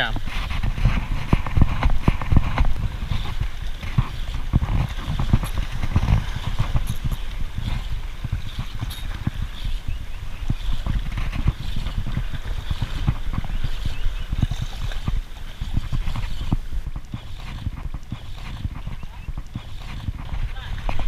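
Close-up handling noise of an ultralight spinning reel being cranked while fighting a hooked fish: a dense, irregular run of clicks and knocks over a low rumble.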